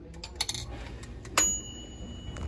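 A few soft knocks, then one sharp clink about one and a half seconds in that rings on briefly in a high, bell-like tone: hard kitchenware struck against kitchenware.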